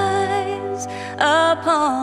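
Slow, gentle hymn: a woman singing, holding a note and then starting a new phrase just past the middle, accompanied by two acoustic guitars.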